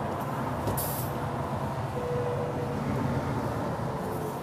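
Steady motorway traffic: cars and lorries passing at speed, with a low engine rumble underneath and a brief hiss about a second in.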